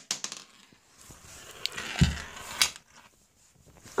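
Glass marbles being handled on a table, giving a few scattered small clicks and knocks, with a louder dull thump about halfway through followed by a sharp click.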